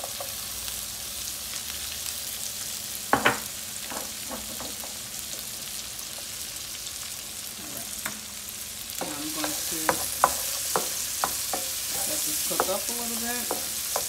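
Chopped bell peppers and garlic cloves sizzling in melted butter in a frying pan. A utensil knocks sharply on the pan about three seconds in, then clicks and scrapes against it repeatedly through the second half as the vegetables are stirred.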